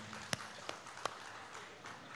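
Sparse audience applause: a handful of scattered single hand claps, about four sharp claps spread over two seconds, above a faint haze of room noise.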